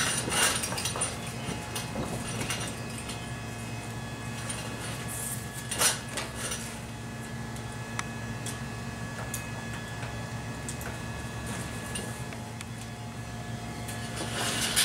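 A clear vinyl patio-enclosure curtain being handled: pulled along its horizontal roller track and fastened down at the floor. It gives scattered rustles and scrapes, the loudest about six seconds in, and a sharp click about eight seconds in as a floor fastener is secured. A steady low hum runs underneath.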